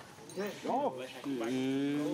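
A low, drawn-out call: a short rising and falling call about half a second in, then a long, low, steady call held for about a second in the second half.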